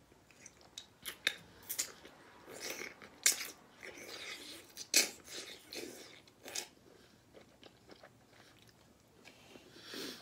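Close-miked chewing of soft young coconut meat, with irregular wet mouth clicks and smacks, the loudest about five seconds in.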